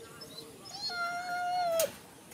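A dog whining once: a single steady, high-pitched whine lasting about a second that dips slightly at the end and stops with a sharp tap.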